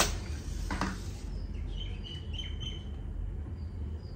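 A bird chirping a quick string of short, high notes, over a steady low hum. A single short knock sounds just before the chirps, under a second in.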